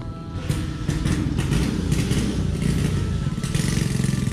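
Small motorcycle engine running at idle, a rapid even low putter with some rattle, stepping up in level about half a second in.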